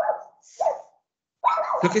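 A dog giving two short barks in the first second.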